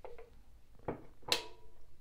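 A person taking a sip of a drink: a few soft mouth and swallowing sounds, the clearest about a second and a half in.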